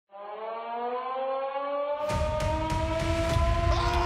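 Opening sound design of a highlight reel: a chord of sustained tones that slowly rises in pitch, like a siren. About two seconds in, a deep rumble and sharp hits come in under it.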